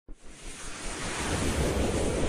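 Rushing whoosh sound effect for an animated logo intro: a noise with a low rumble that swells steadily louder.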